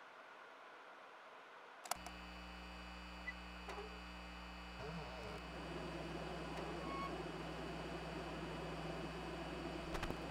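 Record player starting up: a click about two seconds in, then a steady low hum, and a few small knocks around the middle as the tonearm is lowered onto the vinyl record. After that the stylus surface noise builds, a faint hiss and crackle under the hum.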